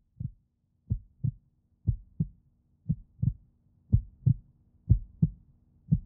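Heartbeat sound effect: paired low thumps, lub-dub, about once a second, growing louder, over a faint steady low hum.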